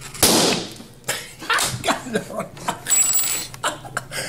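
A rubber balloon bursts with a single sharp bang, overstretched over a bottle-top nozzle too big for it. A man laughs from about a second in.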